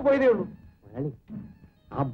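A raised voice speaking Malayalam dialogue: one long, loud syllable falling in pitch at the start, then a few short, quieter words.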